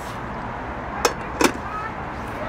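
Steady traffic noise from a nearby road, with two short sharp clinks about a second and a second and a half in as dishes and a metal steamer basket are handled on the table.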